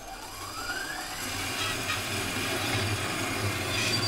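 Metal-cutting bandsaw starting up, its motor whine rising in pitch over the first second and a half, then running steadily as the blade cuts into a clamped stainless steel tube bend, the sound slowly building.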